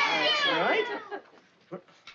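A group of children's high-pitched voices squealing and laughing, sliding down and dying away about a second in, then a couple of faint soft knocks.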